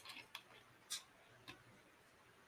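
A person eating a salty snack close to the microphone: a few faint, short crunching clicks spread over two seconds.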